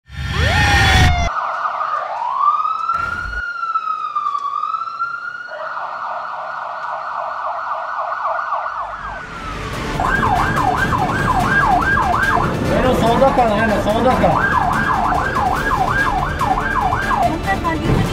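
Electronic emergency siren: a short loud whoosh, then a clean, slow wail rising and falling, which switches about five seconds in to a fast warble. From about nine seconds an ambulance siren yelps rapidly, about three sweeps a second, heard from inside the cab over traffic noise. Around the middle there is briefly a tangle of overlapping sweeps.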